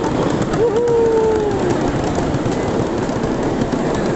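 Small open rail cart running along a narrow track: a steady rattling rumble of its wheels on the rails, with a brief high squeal that holds and sinks slightly from about half a second in, lasting about a second.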